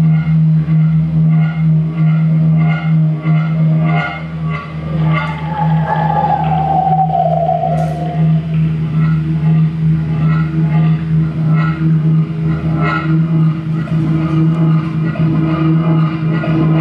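Live improvised electronic drone music: a steady low hum with a pulsing texture above it, and a higher gliding tone that slowly falls in pitch from about five to eight seconds in.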